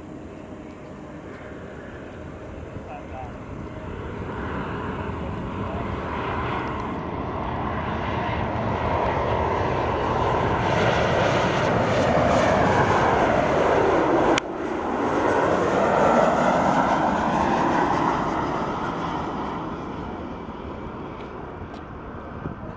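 Jet airliner on final approach with its landing gear down, passing low overhead: its engine roar grows steadily louder, peaks for several seconds, then fades as it heads to the runway. A single sharp click sounds about halfway through.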